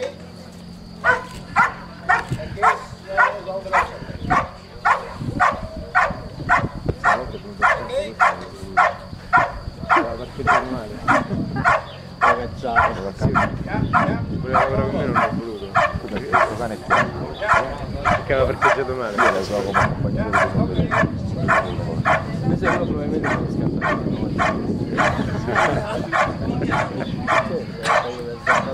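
Belgian Malinois barking steadily and rhythmically at a helper in a hiding blind, about two barks a second, starting about a second in. This is the hold-and-bark of IPO/FMBB protection work: the dog guards the decoy by barking without biting.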